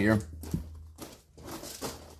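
Soft rustling and scuffing handling noise from a hand-held camera being carried, with one sharp click about half a second in, over a steady low hum.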